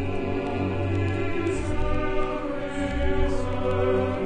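Choral music: a choir holding long, sustained chords over a steady low accompaniment.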